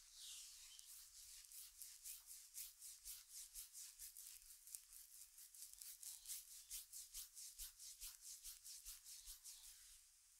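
Faint, fast rhythmic rubbing of a palm back and forth over oiled skin on the shoulder and upper back, about five strokes a second. It starts about a second and a half in and stops near the end.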